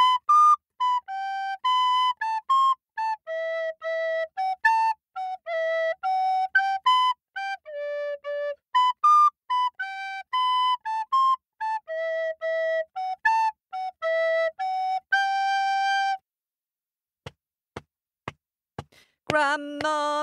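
Solo flute playing a melody of short, separate notes, then stopping a few seconds before the end. After a pause with a few faint clicks, a voice begins singing just before the end.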